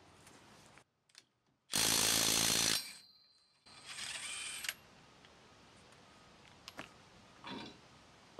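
Cordless impact wrench run on the nuts of a truck's wheel spacer at the bare hub: one loud burst of about a second, then a shorter, quieter run, with brief dead silence between them.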